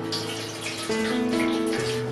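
Warm water poured from a stainless steel kettle splashing through a mesh strainer into a stainless steel sink, blanching jellyfish strips, with background music of steady notes playing over it.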